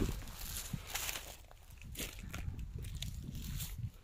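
Footsteps through dry grass and dead weeds, with faint irregular crackles, over a low wind rumble on the microphone.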